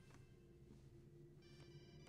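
A telephone ringing faintly: one ring ends just after the start, and the next begins about a second and a half in, over a low steady hum.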